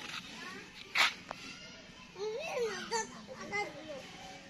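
Children's voices in the background, talking and calling out, with a sharp burst about a second in and rising-and-falling calls in the second half.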